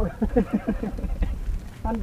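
Speech: men talking.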